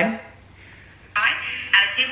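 Speech only: a brief lull, then from about a second in a voice reading recipe steps through a phone's small speaker.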